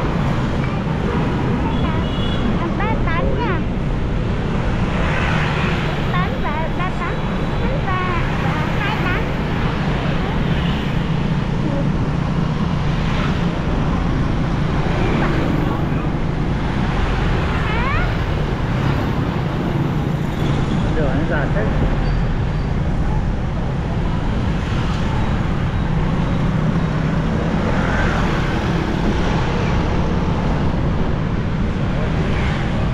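Steady motor-traffic noise of a busy street with many motorbikes, under a constant low engine hum and road noise from the moving vehicle carrying the recording. Short high chirps and squeaks cut through now and then.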